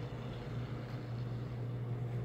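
Reef aquarium equipment running: the pumps and protein skimmer give a steady low hum with a soft hiss of moving water and air.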